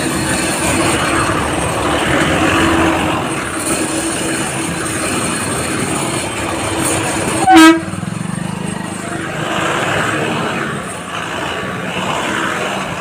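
Steady din of vehicle engines and traffic, with one short, loud horn blast about seven and a half seconds in.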